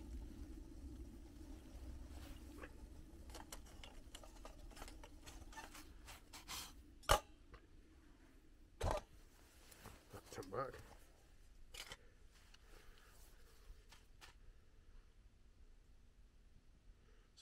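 Water boiling in a small metal pan over a methylated-spirit burner, a steady low bubbling with the flame that fades after about nine seconds. Sharp clinks of the metal pan being handled and lifted come about seven and nine seconds in.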